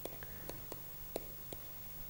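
Faint ticks and scratches of a pen writing an equation, about six short strokes in two seconds, the loudest a little after a second in, over a steady low electrical hum.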